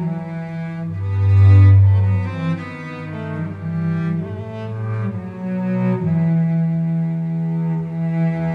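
Solo cello played with the bow: a slow hymn melody of sustained notes. A loud low note swells about a second in and fades after a second or so.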